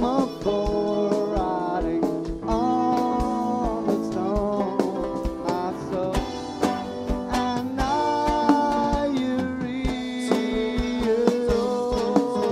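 Live rock band playing: a lead line of held notes that slide up and down over chords, with a steady kick-drum beat underneath.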